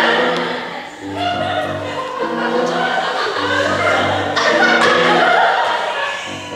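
A man singing a musical theatre song to grand piano accompaniment. The piano repeats a chord pattern with a low bass note about every two seconds under the sung line.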